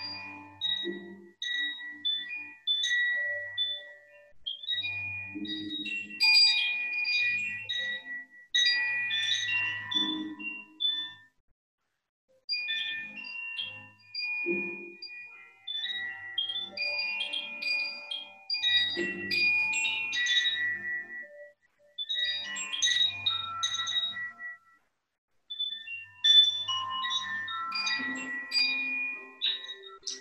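A hand-held chime swung on its string, giving bright, clear tones that ring out in irregular clusters, with a few brief pauses.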